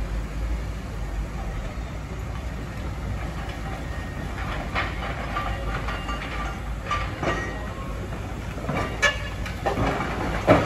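Demolition-site and street noise: a steady low rumble of machinery with scattered clanks and knocks, several of them in the second half.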